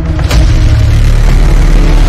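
Cinematic boom-and-rumble sound effect from a horror-style logo intro: a loud swell rushes in about a quarter second in, then settles into a deep, sustained rumble.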